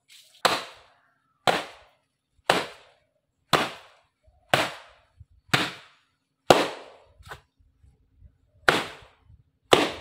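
Wet cloth being beaten by hand against a stone washing slab: about nine sharp slaps, roughly one a second.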